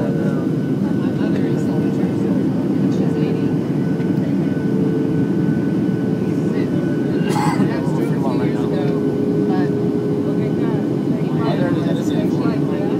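Steady cabin noise of a Southwest Boeing 737 in descent: a low rushing drone of jet engines and airflow with a faint steady whine held over it. A brief click about seven and a half seconds in.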